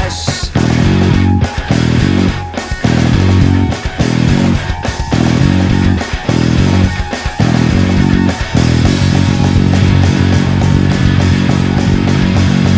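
Electric bass guitar played fingerstyle along with a full rock-band backing track. The music stops short several times in the first part, with brief gaps, then runs on steadily.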